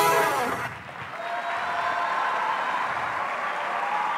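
Audience applauding in a theatre, a steady clapping that follows the last notes of a song dying away in the first second.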